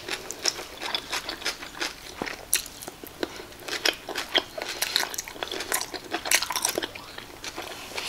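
Close-up mouth sounds of a person biting and chewing a boiled octopus tentacle: many short, irregular wet clicks and smacks.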